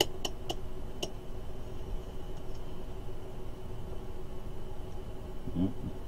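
Four or five sharp clicks in about the first second as the rotary selector dial of a handheld digital multimeter is turned through its positions, then a steady background hum.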